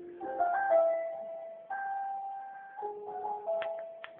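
A simple melody played one note at a time, some notes held for about a second, with a couple of sharp clicks near the end.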